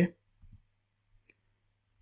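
A faint single computer mouse click about a second in, clicking through an installer wizard page. It comes in a near-quiet gap after a spoken word, with a faint low bump shortly before it.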